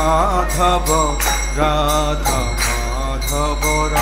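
Devotional song: one voice singing a flowing melody over instrumental accompaniment, with metal percussion jingling and ringing in a steady beat.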